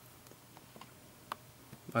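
A few faint, scattered clicks and ticks from a plastic blister-packed Hot Wheels die-cast car card being handled in the hands, the sharpest about a second and a quarter in.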